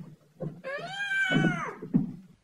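A high-pitched, drawn-out cry lasting about a second that rises and then falls in pitch, with a few low thumps around it.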